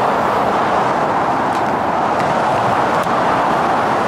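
Steady, even rush of multi-lane freeway traffic heard from an overpass above it: tyres and engines of many cars blending into one continuous noise.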